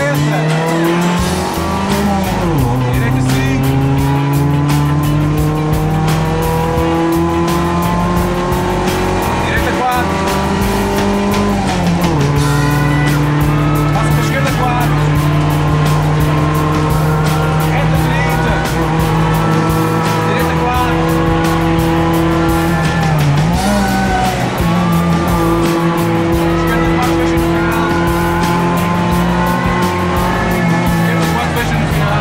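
Renault Clio 1.2 rally car's engine heard from inside the cabin, pulling hard under load: its pitch climbs slowly through the revs and drops sharply at upshifts about two and a half seconds and twelve seconds in, with a brief dip and recovery about three-quarters through.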